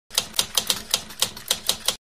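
Typing sound effect: about nine sharp keystroke clicks at an uneven pace, stopping abruptly.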